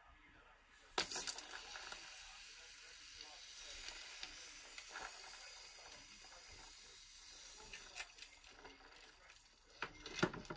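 Hot fused glass quenched in a bowl of ice water: a sharp clink about a second in, then a steady hiss with fine crackling that lasts several seconds and fades, with another clink of metal tongs and glass near the end. The crackle is the thermal shock that crazes the glass.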